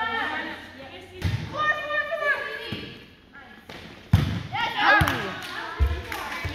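Volleyball thumps in a gym, about five sharp hits, the loudest about four seconds in, mixed with players' shouts and calls echoing in the large hall.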